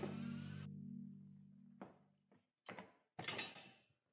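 Background music fading out, then a few short knocks and a brief scrape as hunting gear is handled in the cargo bed of a utility vehicle.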